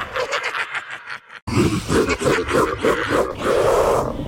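Edited-in transition sound effect: a crackling glitch for about a second, a sudden brief cutout, then a rough, pulsing animal-like growl that swells into a held roar near the end.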